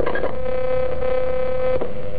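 Spirit box radio-sweep device putting out a steady, loud buzzing hum, with a click near the end.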